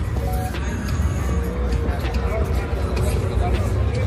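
Busy indoor arena ambience: many people talking over a steady low rumble, with music playing in the background.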